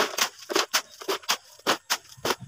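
A steel shovel scraping and scooping gritty wet concrete mix with gravel, a quick series of short scrapes and clicks, about four a second.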